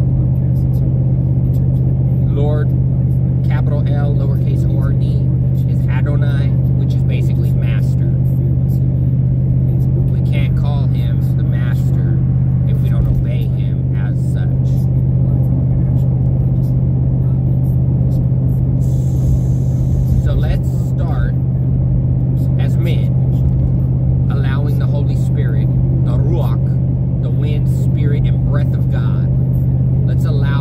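Steady low hum inside a vehicle cabin at highway speed, unchanging throughout, with a man's voice heard over it at times.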